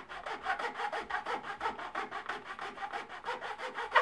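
Hand file scraping back and forth along the edge of a 3D-printed PETG carbon part, in quick repeated strokes, several a second. It is filing down the ridge left by a layer shift in the print to get a smooth edge.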